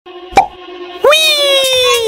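Edited-in sound effects: a short pop, then about halfway through a long tone with overtones that slides slowly down in pitch, over a faint steady music bed.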